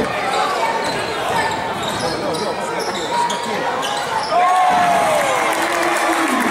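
Basketball being dribbled on a hardwood court, with sneakers squeaking in short sliding squeals, one longer falling squeal about four seconds in, over the voices of players and spectators in the hall.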